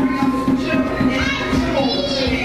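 Drumming with many voices over it, several of them high-pitched and overlapping, as in group singing or calling.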